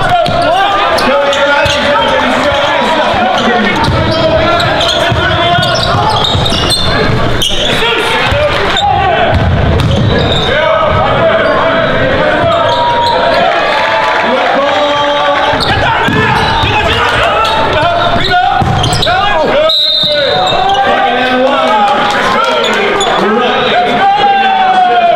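Live game sound in a school gymnasium: basketballs bouncing on the hardwood court under steady crowd chatter, with a few sharp knocks along the way.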